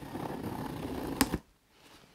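Box cutter blade slicing through the packing tape along a cardboard box's seam: a continuous scratchy rasp that ends in a sharp click a little over a second in, then stops.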